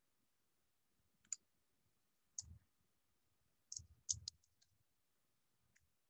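Scattered faint clicks of typing on a computer keyboard, with a quick run of three keystrokes about four seconds in, against near silence.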